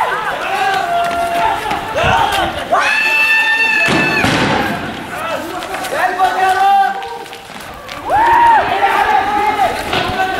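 Several protesters shouting and yelling long, high calls, with a sharp bang about four seconds in.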